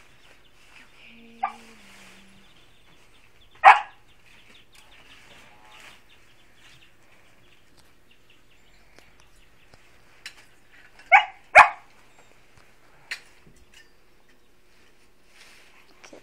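A dog barking in short single barks, loudest about four seconds in, with a quick pair of barks past the middle and one more soon after.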